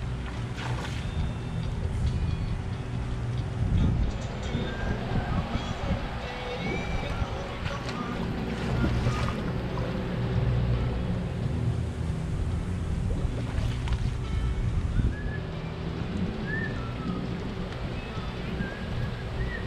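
Steady low rumble of wind on the microphone mixed with water noise from an outdoor swimming pool, under a faint steady hum. A few short high chirps come through near the middle and toward the end.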